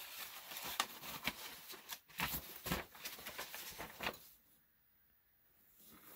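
Faint paper rustling with light taps and scratches of a pen, from someone handling a notepad and writing. It drops to near silence about four seconds in.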